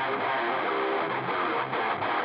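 Opening of a heavy metal song: a strummed guitar riff played alone with its treble cut off, sounding thin and filtered.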